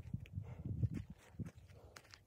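Footsteps on dry forest floor, soft irregular steps that grow fainter near the end.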